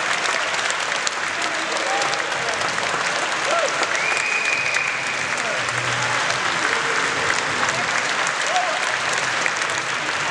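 A banquet audience applauding steadily, with scattered voices and cheers through the clapping. A single high held tone, like a whistle, sounds about four seconds in.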